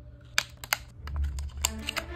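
Cardboard toy packaging and the plastic figure and tray inside being handled: a few sharp clicks and taps, with a low rumble about a second in.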